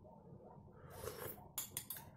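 Faint sounds of eating soup: a soft sip about a second in, then a few quick clinks of a metal spoon against a white ceramic bowl near the end.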